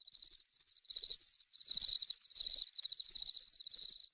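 A high, rapidly pulsing insect trill, cricket-like, one steady pitch that swells and fades about every three-quarters of a second.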